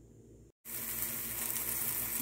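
Cubed eggplant sizzling as it fries in oil in a pan: a steady hiss that starts abruptly about half a second in, after a faint, near-quiet moment.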